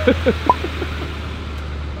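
Diesel engine of a GMC pickup truck running steadily as it tows a loaded car trailer past, a low drone, with a few short rising squeals in the first second.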